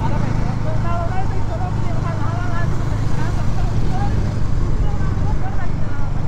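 Motorcycle engines running steadily at low revs, a constant low hum, with faint talking over it.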